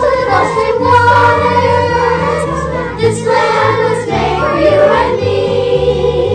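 Children's choir singing a song together over instrumental accompaniment, the voices holding long notes while the low accompaniment notes change in steps.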